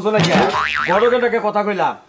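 Cartoon 'boing' sound effect: a springy tone that wobbles rapidly up and down for under a second. Speech follows it.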